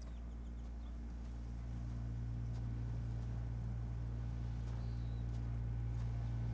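A low, sustained drone of cello and electronics slowly swelling in level. Over it, a few faint footsteps crunch on gravel at a walking pace.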